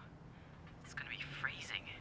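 Speech only: a short, quiet, near-whispered phrase from a voice about a second in, with a faint low hum underneath.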